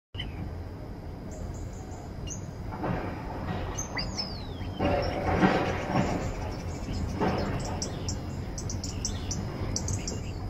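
Common starling singing: high whistles, one long falling whistle about four seconds in, and a quick run of clicks near the end. Three louder rough, rushing bursts come around three, five and seven seconds in, over a steady low rumble.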